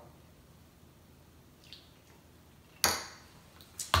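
Quiet room tone, then a single sharp clink of a metal spoon against a dish nearly three seconds in, ringing briefly.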